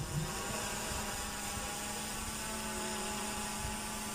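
DJI Mavic Air 2 quadcopter's propellers humming overhead as it hovers and slowly descends: a steady drone hum with several faint held tones.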